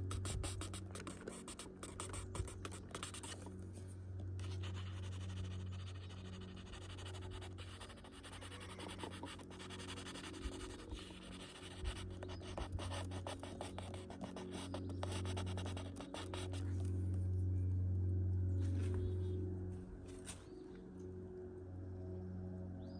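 Rapid scratching strokes of a colored pencil shading on sketchbook paper, stopping about sixteen seconds in. Under it plays soft ambient background music with low held tones that swell near the end.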